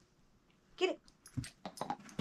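Doberman pinscher giving one short whine, then a quick series of knocks, clicks and thumps as it lunges and grabs a hard bone-shaped retrieve toy off the carpet.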